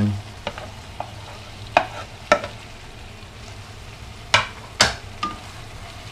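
Wooden slotted spatula scraping beef off a wooden plate into a wok and stirring it in, with several sharp scrapes and knocks, the loudest two pairs about two seconds in and near the end. Underneath, the tomato gravy sizzles steadily in the pan.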